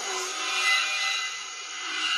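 Electronic noise effect in a DJ mix intro: a steady hiss-like haze with no beat. It dips a little past the middle and swells again near the end.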